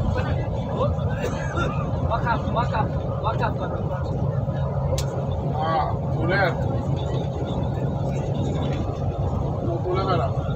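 Steady engine and road rumble heard from inside the cab of a moving vehicle, with a person's voice talking now and then and a single light click about halfway through.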